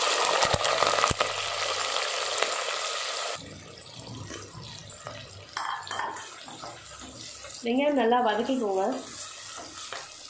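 Sliced onions hitting hot oil in an earthenware pot, sizzling loudly for about three seconds with a couple of knocks of a metal spoon on the pot, then frying more quietly while they are stirred. A voice speaks briefly near the end.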